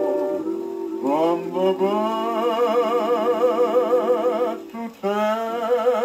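A 1949 Mercury 78 rpm record playing on an acoustic phonograph: long held melody notes with a wide vibrato over the band, with short breaks about a second in and just before the end.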